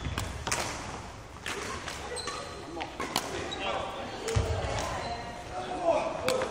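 Badminton rally: rackets strike the shuttlecock several times with sharp cracks, and shoes squeak on the wooden court floor, with voices in the background.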